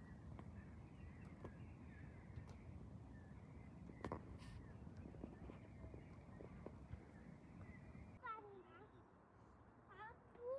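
Faint outdoor ambience: a low, even rumble and hiss with a few faint short bird chirps. About eight seconds in, the background drops away and a high voice with gliding pitch is heard.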